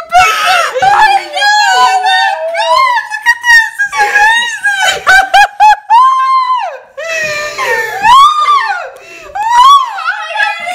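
Teenagers screaming and shrieking in excitement: a run of high-pitched, celebratory cries, with one long held scream about six seconds in.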